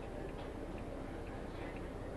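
Steady room hum with a faint, regular ticking, about two ticks a second.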